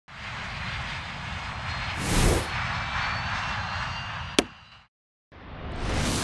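Intro sound effects: a steady rush of airplane engine noise, with a whoosh about two seconds in and one sharp knock a little after four seconds. It fades to a brief total silence, then a rising whoosh comes in at the end.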